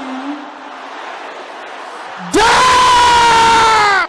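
A congregation shouting a prayer together, heard as a crowd roar. About two seconds in, one loud yell is held for nearly two seconds, falling slightly in pitch, and is the loudest sound.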